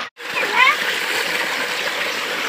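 Water gushing from a pipe into a concrete tank, a steady rushing splash. A brief dropout comes just after the start, and a short shout rises over the water about half a second in.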